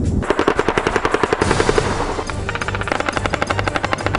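Automatic machine-gun fire in two long bursts of about ten rounds a second, the first beginning just after the start and the second a little past halfway.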